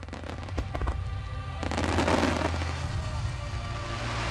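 Aerial fireworks going off: a string of sharp pops, then a dense crackle of many bursting stars that is loudest about two seconds in. Music plays underneath.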